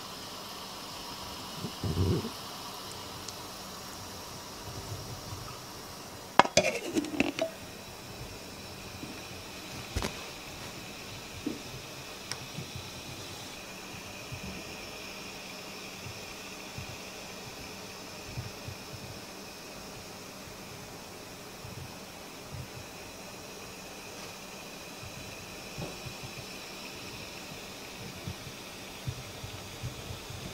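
Faint, steady fizzing of fine hydrogen bubbles rising from the electrolysis plate in a plastic water pitcher, with a few knocks and bumps, the loudest about six and a half seconds in.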